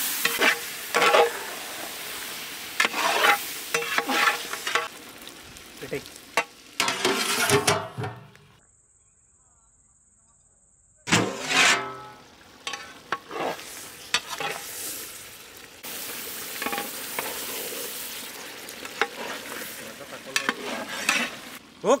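A metal spatula scrapes and stirs masala-coated chicken frying in a large metal pot, in irregular strokes over sizzling. The sound drops out for a few seconds near the middle, returns briefly, then settles into softer sizzling.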